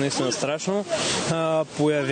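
A man talking: Bulgarian sports commentary, with a brief hiss about a second in.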